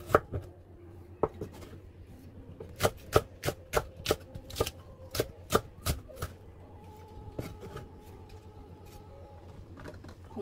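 Kitchen knife chopping vegetables on a wooden cutting board: irregular sharp knocks of the blade on the board. There is a quick run of about ten strikes in the middle and only a few scattered ones near the end.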